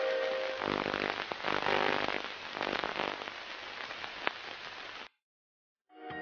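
Dense crackling noise with faint tones beneath, fading and then cutting off suddenly about five seconds in.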